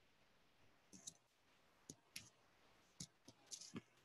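Faint, scattered sharp clicks, about eight of them from about a second in, some in close pairs, over low room hiss.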